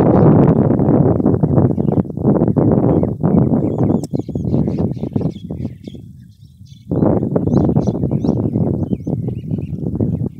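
Wind buffeting the microphone in loud, gusty rumbles, easing off for a moment about six seconds in. Small birds chirp faintly through the middle and later part.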